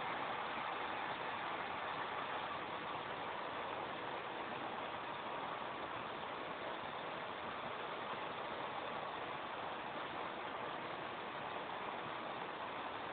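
Steady, even whir of server equipment fans in a server room.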